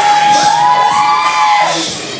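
Dance music playing through a speaker, with one long held high note that steps up in pitch about halfway through.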